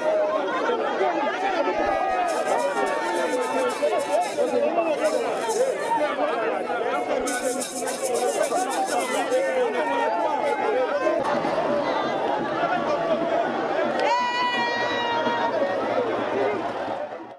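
A large crowd talking and shouting at once around a vehicle, many voices overlapping. About fourteen seconds in, a steady high held tone sounds above the voices.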